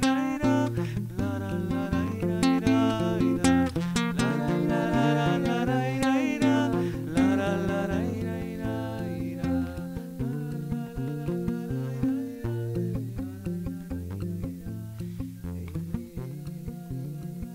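Two acoustic guitars playing a folk song, with a man singing a held, gliding melody over them for about the first half. After that the guitars carry on alone with picked notes, gradually getting quieter.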